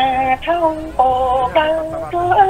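A song: one voice singing held notes that step from pitch to pitch, with music behind it.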